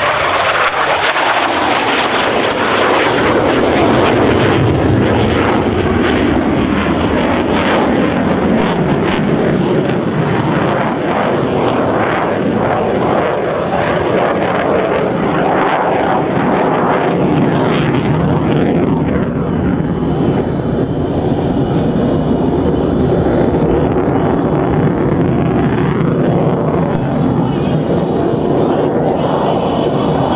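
USAF F-16 Fighting Falcon's single jet engine, a loud continuous roar as the fighter flies past and then climbs away, the roar growing duller after about two-thirds of the way through.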